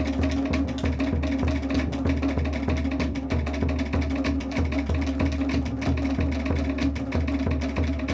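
Tahitian dance drumming: rapid clattering wooden slit-drum (tō'ere) patterns over a steady, repeating bass drum beat, with a steady low drone underneath.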